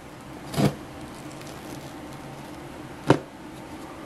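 Cardboard shipping box being handled with a box cutter: a short soft scrape about half a second in and a single sharp click about three seconds in, over a steady low hum.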